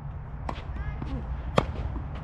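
Tennis ball being struck with rackets during a rally: two sharp pops about a second apart, the second, a little past the middle, the louder.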